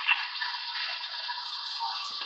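Steady hiss and band static from a CB base radio's speaker on an open sideband skip channel, a thin rushing noise with no voice in it.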